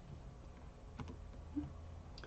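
A single faint click about a second in, a computer key press that advances the lecture slide, over a low steady hum.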